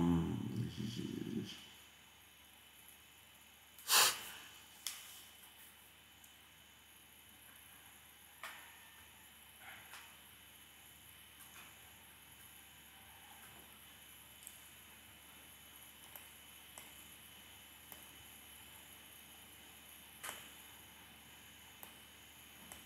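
Quiet room tone at a computer desk: a low murmur in the first second or so, a short sharp breathy noise close to the microphone about four seconds in, and a few faint clicks scattered through.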